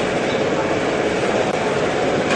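Steady, loud outdoor background noise with a low hum running through it, picked up on a live field reporter's microphone at an airport cargo terminal gate.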